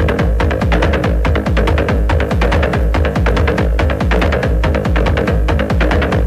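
Techno DJ mix: a steady four-on-the-floor kick drum at about two beats a second, with quick hi-hat ticks over it and a held mid-range synth tone.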